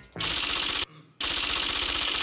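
Rapid clicking sound effect for an on-screen caption appearing, in two bursts: a short one, then after a brief gap a longer one.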